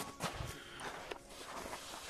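Footsteps on hard-packed, frozen snow: a few faint, irregular crunches.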